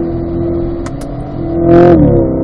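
Chevrolet Corvette C8's 6.2-litre V8 pulling in third gear, heard from inside the cabin, a steady engine note that gets louder toward the end as the throttle goes back on.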